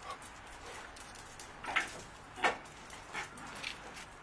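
Two short, sharp dog yaps about 0.7 s apart, a little under halfway through, with a couple of fainter ones after.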